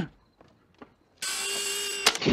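Film sound effect of the DeLorean time machine arriving: after a nearly quiet first second, a loud electrical crackling buzz with a steady hum starts suddenly and holds.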